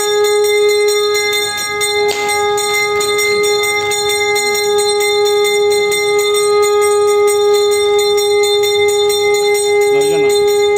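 Bells jingling in a fast, even rhythm over one steady pitched tone held unbroken, as at a Hindu funeral rite.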